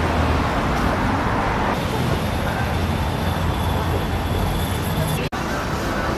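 Steady city street traffic noise, the hum of passing vehicles, broken by a sudden brief dropout about five seconds in where the recording cuts.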